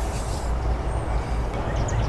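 Steady low background rumble, with a high hiss that cuts off suddenly about half a second in and a faint short high chirp about a second in.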